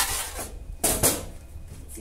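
Plastic kitchen wrap crinkling as it is pulled and pressed over a bowl of resting dough, in two rustling bursts, the louder one about a second in.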